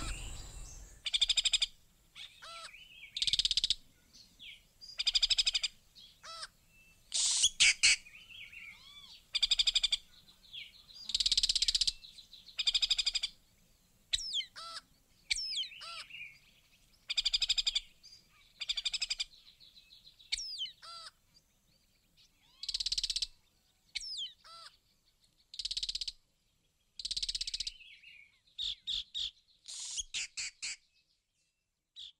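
Birds calling: a run of short, bright calls every second or two, some sweeping quickly up or down in pitch, with a quicker patter of chirps near the end.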